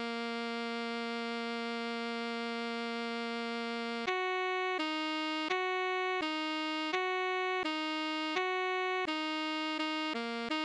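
Solo alto saxophone part played with a perfectly steady, unwavering tone: one note held for about four seconds, then two notes alternating, each lasting about 0.7 seconds.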